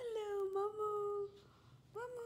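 Domestic cat giving one long meow, about a second and a half, nearly level in pitch, with a second meow starting right at the end.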